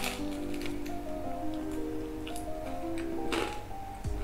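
Music with slow, sustained notes plays under close-miked eating: a person chewing pizza, with small crunches and mouth clicks and a louder crunch about three and a half seconds in.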